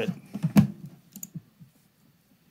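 Computer clicks: one sharp click about half a second in, then a few faint ones, then quiet.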